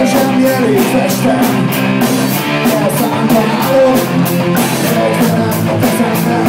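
Rock band playing live: a drum kit keeps a steady beat with evenly spaced cymbal hits under guitar.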